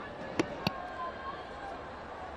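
Two sharp knocks about a third of a second apart as a cricket ball meets the bat, over a steady background hum of crowd and ground noise.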